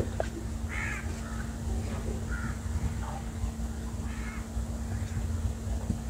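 Several short bird calls, faint and spaced out, over a steady low hum and background rumble.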